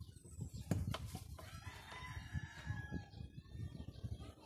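A rooster crowing, one long call starting about one and a half seconds in, over knocks and handling of a glass bottle being uncapped.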